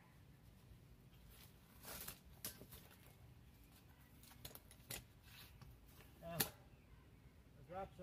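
Faint, scattered clicks and knocks of rope and metal rigging hardware being handled as a rope is wrapped around a tree trunk to set up a Porter Wrap friction device. The sharpest knock comes about six seconds in.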